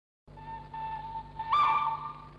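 A recorded train whistle in a musique concrète tape piece, starting about a quarter-second in as one steady tone over a low hum. About a second and a half in, a higher and louder second tone joins it in a two-note chord: the short whistle that forms the cadence closing the section.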